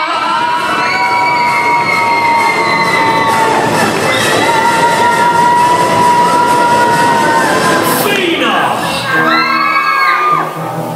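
Audience cheering and screaming for a performer coming on stage: two long, high-pitched screams held about three seconds each over the crowd noise, then rising whoops near the end.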